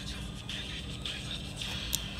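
Faint background music over a steady low hum, with one sharp click near the end as a finger taps the Schindler PORT destination terminal's touchscreen.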